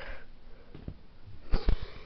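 Soft handling bumps of a handheld camera and plush puppets, with a short sniff about one and a half seconds in.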